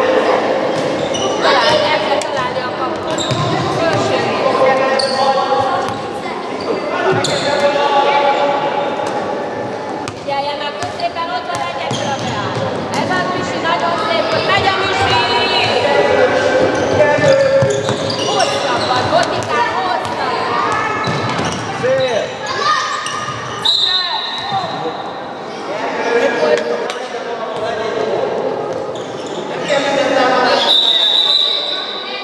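A handball bouncing repeatedly on a wooden sports-hall floor as players dribble and pass. Voices of players and spectators run throughout, echoing in the large hall.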